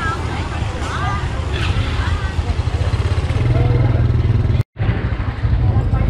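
Street-market ambience: scattered voices and chatter of vendors and shoppers over a steady low rumble of motorbike traffic. The sound cuts out for a split second a little before the end.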